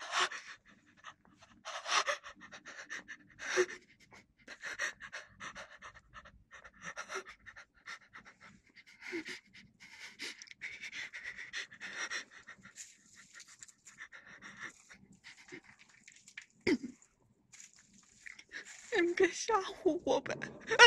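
A person breathing close to the microphone, in irregular breaths every second or two, with one sharp knock late on.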